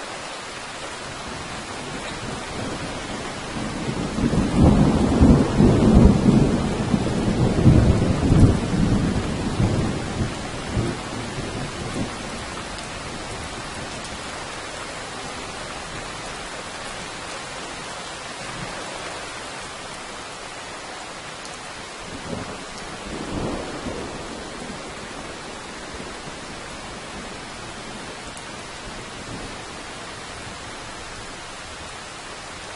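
Steady rain with thunder: a long low rumble builds about four seconds in and dies away over some eight seconds, and a shorter, fainter rumble comes about twenty-two seconds in.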